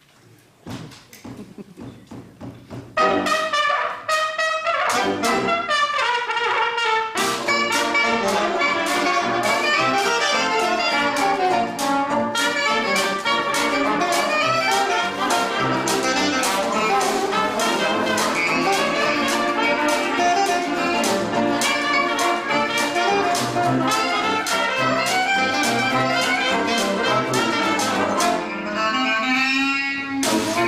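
Traditional jazz band starting a 1920s tune: after a few faint taps, the full band comes in about three seconds in, with trumpet, trombone and reeds playing together over a steady washboard beat.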